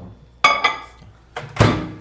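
A ceramic mug set down inside a Panasonic microwave with a short ringing clink about half a second in, then the microwave door shut with a hard thud near the end, which is the loudest sound.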